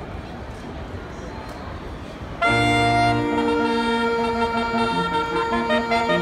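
A saxophone quartet, baritone saxophone on the bass line, enters together about two and a half seconds in with a loud held chord, then moves into a melody over sustained notes. Before the entry there is only a steady background murmur of a large public hall.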